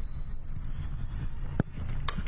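Wind rumbling on the microphone, then a single sharp thump about one and a half seconds in as a soccer ball is struck for a penalty kick.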